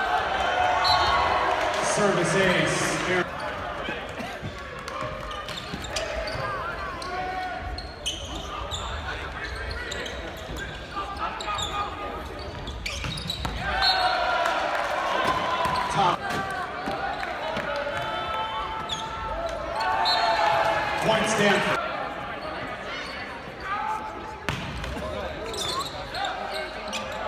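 Indoor volleyball play in a large arena: repeated thuds of the ball being served, passed and hit, mixed with players and spectators shouting and talking. The voices come in louder bursts near the start, about halfway through and again a little later, with the hall's echo.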